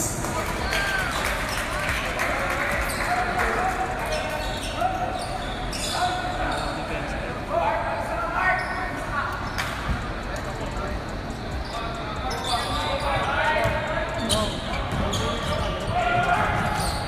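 A basketball bouncing on the hardwood court of a large gym, with scattered sharp knocks under a steady background of crowd voices and chatter.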